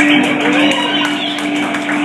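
Live rock band music: one steady note held throughout, with gliding tones that rise and fall above it.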